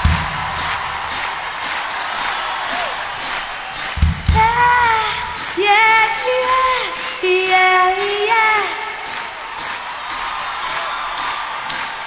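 A live pop band with a female lead singer. A steady ticking beat and low drum hits open it, and from about four seconds in the singer holds a line over the band for about five seconds.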